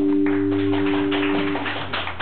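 The final chord of a bass guitar and an acoustic guitar ringing out, cut off about a second and a half in, while a burst of clapping from the audience rises over it.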